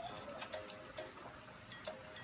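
Irregular clicks, each with a short electronic beep, from a red children's toy tablet as its buttons are pressed, about five in two seconds.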